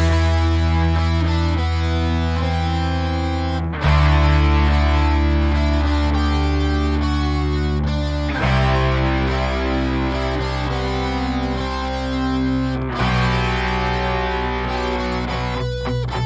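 Distorted electric guitar holding long ringing chords over bass, changing chord about every four to five seconds: an instrumental passage of a punk-rock song.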